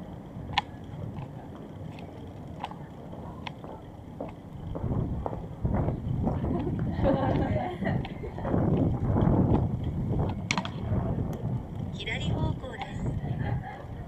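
Street ambience recorded on the move: a low rumble that swells about five seconds in, with scattered sharp clicks and the voices of passersby.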